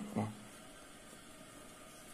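A single short spoken word, then faint, steady room hiss with nothing else distinct.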